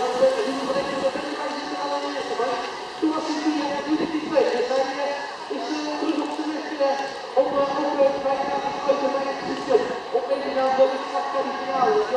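An announcer's voice coming over a public-address loudspeaker, talking without a break.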